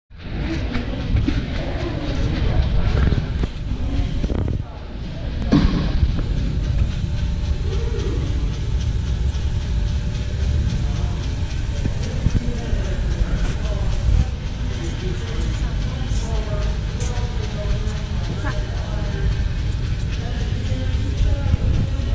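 Indoor exhibition-hall ambience: background crowd chatter over a steady low rumble, with a single knock about five seconds in.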